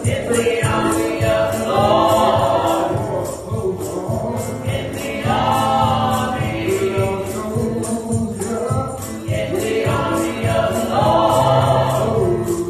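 A small gospel praise team singing together into microphones, in sung phrases a few seconds long over a steady percussive beat.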